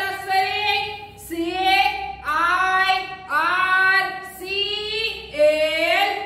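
A woman singing alone without accompaniment, in a string of held notes of about a second each with short breaks between them.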